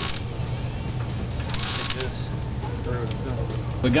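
Arc welder tack-welding sheet-steel patch panels: two short bursts of crackling arc noise, a brief one at the start and a longer one of about half a second a moment later, over a steady low hum.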